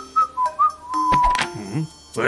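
A person whistling a short tune: a few quick wavering notes, then one held note, ended by a sharp click about one and a half seconds in.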